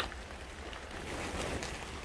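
Rain falling steadily, with a sharp tap right at the start and a rustle about a second in as a plastic tarp is brushed past.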